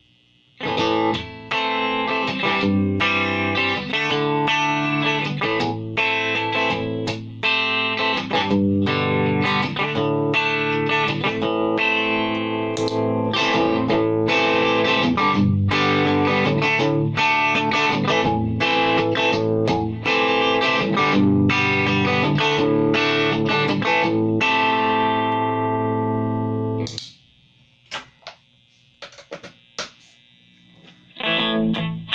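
Giannini Super Sonic electric guitar with Fender Original '57/'62 pickups, played through a tube combo amp: a continuous run of picked chords and single notes starting about a second in. It ends on a chord left to ring out, then stops with a few brief taps near the end.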